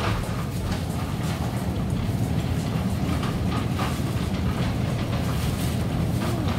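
Plastic shopping cart rolling over a tiled floor: a steady low rumble from the wheels with a constant light rattle and clicking from the basket.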